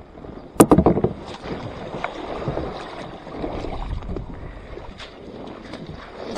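Sea kayak landing in shallow surf on a shingle beach: a quick burst of knocks and scrapes just over half a second in, then the wash and splash of shallow water around the hull and a wading boot.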